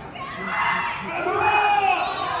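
Kendo kiai: drawn-out shouts from several overlapping voices, their pitch sliding up and down, in a large hall.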